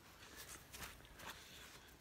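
Near silence with a few faint, soft rustles in the first half.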